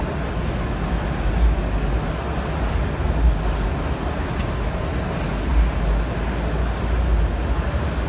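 Steady background din of a busy exhibition hall, with a strong low rumble, and one sharp click about four and a half seconds in.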